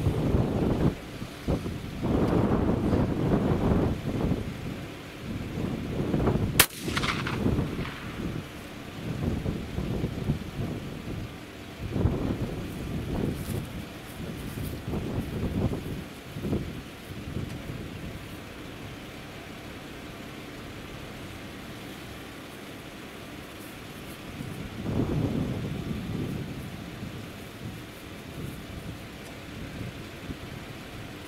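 A single shot from an old 12-gauge single-barrel shotgun about six and a half seconds in, with a brief echo trailing off after the blast.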